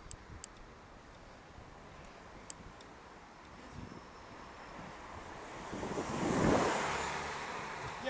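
A car overtaking a bicycle closely at speed: the noise swells as it comes up from behind, peaks about six and a half seconds in, then fades as it pulls away. Low wind and road noise from the moving bike runs underneath.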